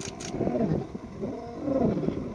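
Lions snarling and roaring during a territorial attack by a coalition of adult males on a young male, in two swelling, rising-and-falling calls. Two short clicks come right at the start.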